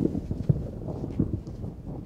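Low rumbling noise with a few dull knocks, the clearest about half a second in.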